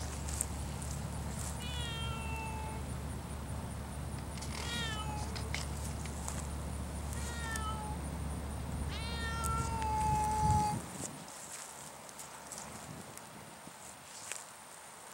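Savannah cat meowing four times, the last call the longest, over a steady low rumble that cuts off near the end.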